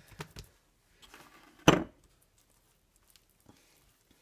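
Hands handling a sheet of seitan dough on a kitchen countertop: a few soft taps and rustles, then one sharp thump just under two seconds in, the loudest sound.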